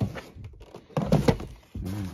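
Packaged items and cardboard boxes being shifted around inside a plastic storage bin: a few hollow knocks and thunks, one right at the start, a cluster about a second in and another near the end.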